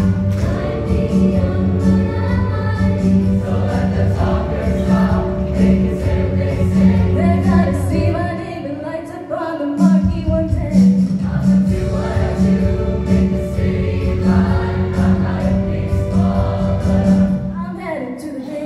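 School show choir singing together over a steady pulsing bass accompaniment. The bass drops out for about a second and a half just past the middle, leaving the voices more exposed, then comes back in.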